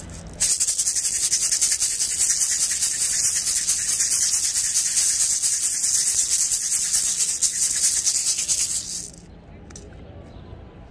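A hand rattle shaken rapidly and without a break during a limpia cleansing. It starts suddenly about half a second in, runs as a dense high hiss, and stops about a second before the end.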